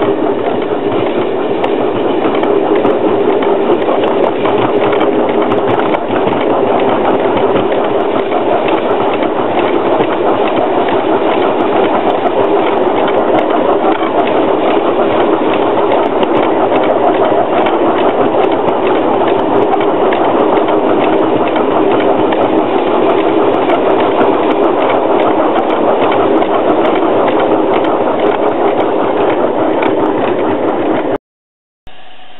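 Miniature 7¼-inch gauge Crampton live-steam locomotive running steadily along the track, heard loudly from on board: a continuous dense mix of exhaust and running-gear noise with wheels on the rails.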